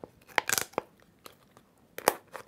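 A plastic drinking straw being pushed through a small hole in the side of a plastic cup: a short burst of plastic crackling and crunching about half a second in, then a few faint ticks.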